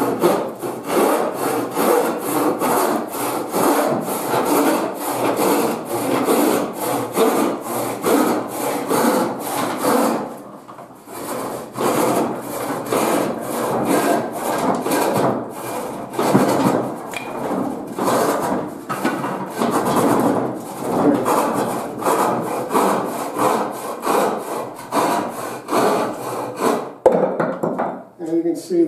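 Hand rip saw, its teeth filed straight across, ripping a wooden board along the grain in steady back-and-forth strokes, about two a second, with a short pause about ten seconds in and a sharp knock near the end. The saw catches a little in the cut, which the sawyer puts down to too little set in the teeth and the wood closing in on the blade.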